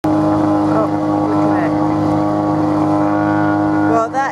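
Boat engine running steadily underway, a constant drone with a strong even hum.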